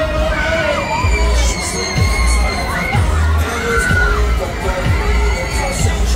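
Riders on a spinning fairground thrill ride screaming and shouting, with long wavering cries, over a heavy bass beat from the ride's music that pulses about once a second.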